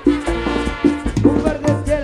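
Live band playing Latin dance music, with repeated chord stabs over a strong bass and a steady beat.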